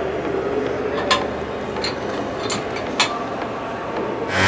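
Metal clinks of a wrench and clamp hardware being handled on a steel mill table: about four sharp clinks over steady workshop background noise.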